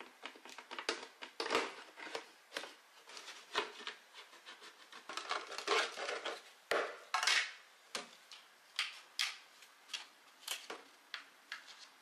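Utility knife blade slicing through the thin wall of a white plastic jug, an irregular run of short crackling, scraping strokes as the blade is worked along the cut line and the plastic flexes.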